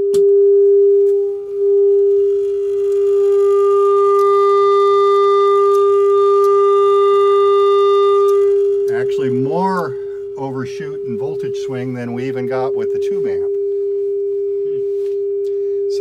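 Steady sine-wave test tone of about 400 Hz from a Quilter Tone Block 202 solid-state amp driving a guitar speaker. It dips briefly about a second and a half in as the output is switched to the speaker, then gains a buzzy edge of overtones for several seconds as the amp runs into flat-topped clipping. Near the nine-second mark it returns to a plain tone.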